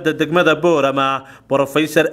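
Speech only: a man talking in Somali, with a brief pause about a second and a half in.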